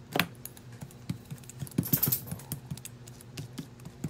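A brayer rolling through a thin layer of tacky black paint, giving an irregular run of small sticky clicks and crackles, densest about two seconds in.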